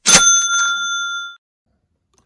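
A single bright bell ding, struck once and ringing for about a second and a quarter before it stops. It is an edited-in sound effect marking the card's price caption.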